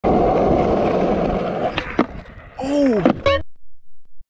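Skateboard wheels rolling over rough concrete with a loud, steady rumble, then two sharp knocks a little before two seconds in. A short voice exclamation with a pitch that rises and falls follows, and the sound cuts off suddenly about three and a half seconds in.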